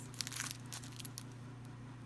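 Faint crinkling of the plastic sleeve on a pack of yuzen chiyogami paper as it is handled, with a few small irregular crackles.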